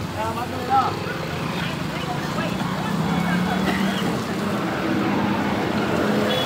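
Roadside traffic ambience: a steady engine hum from passing and idling vehicles, with people talking indistinctly in the background.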